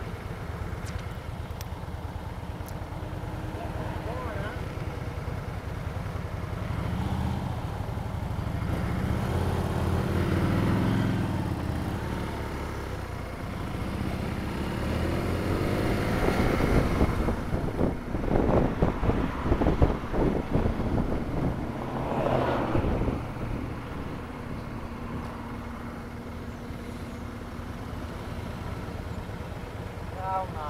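Motorcycle heard from the rider's seat: a BMW R1200RT's flat-twin idling at a light, then building as it pulls away. It runs through traffic with wind buffeting the microphone, loudest a little past the middle. It settles back to a steadier, quieter idle near the end.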